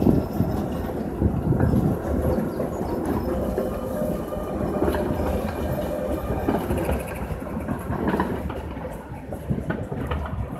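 Articulated Tatra tram running across a tram junction, its wheels rumbling and clattering over the rail joints and points, with a faint steady whine; the sound drops away near the end as the tram moves off.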